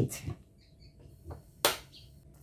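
A single sharp click about one and a half seconds in, just after a softer tap, against a quiet background.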